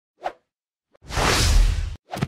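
Animated-logo sound effects: a short blip, then a loud whoosh lasting about a second that cuts off suddenly.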